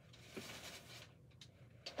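Faint rustling of shredded paper packing filler and a cardboard box being handled, with a couple of light ticks in the second half.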